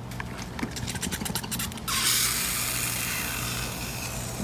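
Vinegar reacting with baking powder inside plastic bottles, crackling and fizzing with rapid tiny pops. About two seconds in, a steady high hiss starts abruptly and drowns it out.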